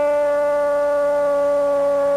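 A male Spanish-language TV commentator's drawn-out shout of "gol", held loud on one steady pitch.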